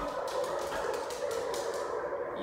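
A small dachshund-mix dog whining in a long, slightly wavering high tone, with faint light clicks underneath.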